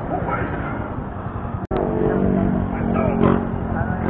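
Vehicle engine running steadily amid street traffic noise, with faint voices in the background. The sound drops out for an instant a little before halfway.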